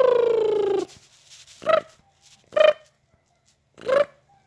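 An 8-week-old baby cooing: one long coo falling slightly in pitch, then three short coos about a second apart.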